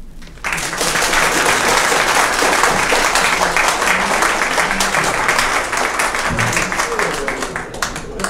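Applause from an audience on a vinyl record, breaking in suddenly about half a second in as a dense patter of clapping and easing off near the end.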